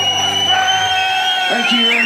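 A live country-rock band's final notes ring out and die away in the first second, with a high held note lasting a little longer. The crowd then whoops and cheers.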